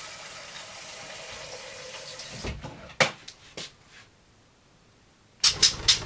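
Water running from a kitchen tap, stopping about two and a half seconds in. A few clicks and knocks follow, then a louder clatter of knocks near the end.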